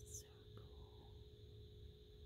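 Near silence: faint room tone with a steady low hum, and a brief soft hiss just after the start.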